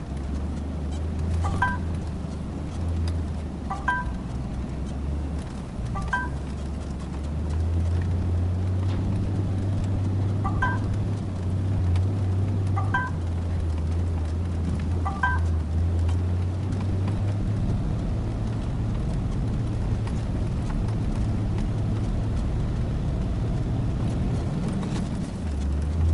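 A 5-ton truck's diesel engine running at low speed, heard from inside the cab, as a steady low hum that grows louder about a third of the way through. Short high chirps repeat about every two seconds over it through the first half, then stop.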